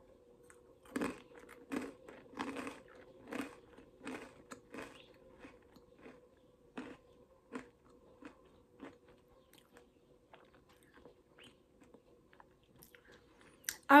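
Someone chewing a crunchy tangy-mustard seasoned hard pretzel: crisp crunches come about every second for the first five seconds, then fewer and fainter, dying away by about nine seconds in.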